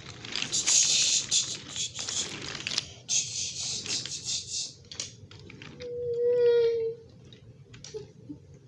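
Wooden toy train cars rolling along wooden track close by, a rattling, clicking run of wheels and couplings. About six seconds in a single steady tone is held for about a second.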